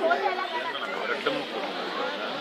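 Background chatter of several people talking at once, with no clear words, and a louder voice right at the start.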